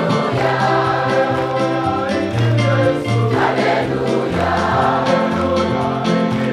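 Choir singing a Swahili gospel song over a bass line of held low notes.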